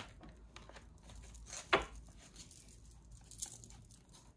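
Oracle cards being shuffled and handled, a soft papery rustle with one sharp card snap a little under two seconds in.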